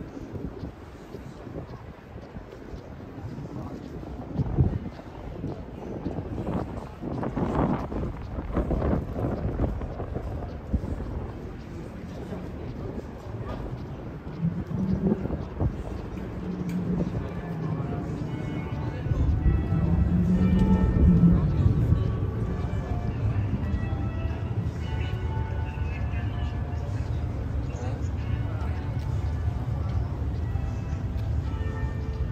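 City street ambience: passers-by talking and traffic passing, with a low engine rumble growing louder about two-thirds of the way through. Bells ring steadily through the later part.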